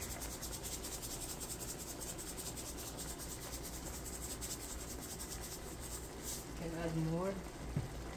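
Hand-twisted grinder grinding Himalayan salt over a pan: a fast, even run of fine high clicks that stops about six seconds in.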